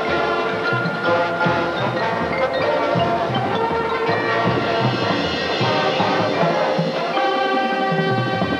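High school marching band playing a jazz-styled field show: brass with the drumline beating out a steady pulse about twice a second, and percussion ringing through. About seven seconds in, the band settles onto a held chord.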